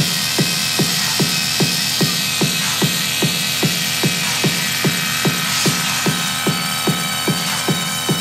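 Dark techno DJ mix in a breakdown with the deep bass cut: a thin, steady pulsing beat of about two and a half hits a second under a hissing high synth wash.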